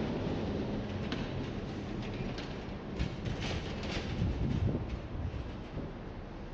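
Street ambience: a low, steady rumble of traffic with a faint hum, and a few light clicks about halfway through.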